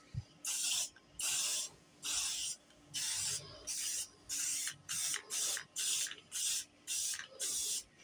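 Aerosol spray-paint can spraying green paint in a quick series of short hissing bursts, about a dozen of them, one or two a second. A brief low knock comes just before the first burst.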